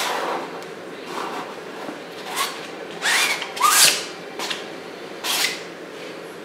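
Steel palette knife scraping oil paint across a stretched canvas in a handful of short strokes, the loudest two in the middle.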